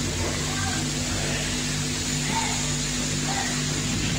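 Steady low hum with a background hiss, and no speech, in the background noise of a lecture recording.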